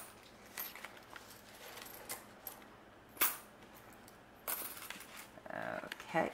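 Loose coins clinking as change is put into a small coin purse: a few separate sharp clinks, the loudest about three seconds in, with some handling rustle near the end.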